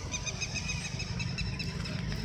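Small birds chirping rapidly and repeatedly, over a steady low rumble.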